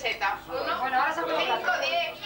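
Several people talking at once in Spanish, voices overlapping in general chatter.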